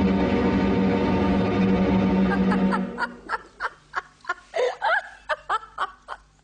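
A held, sustained music chord that cuts off about three seconds in, followed by a quick series of a dozen or so short, high-pitched laughs.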